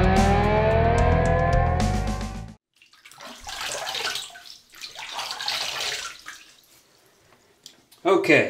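Background music that cuts off about a third of the way in; then water running and splashing at a bathroom sink in two spells of a second or so each.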